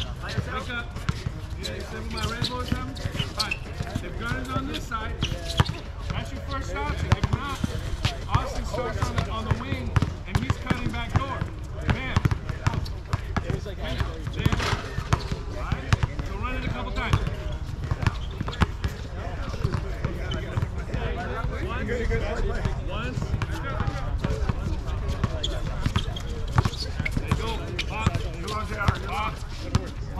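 A basketball bouncing repeatedly on an outdoor hard court during play, the bounces coming at irregular intervals, with players' voices calling out across the court.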